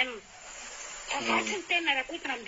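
A person speaking, breaking off for a pause of about a second that holds only a faint hiss, then speaking again.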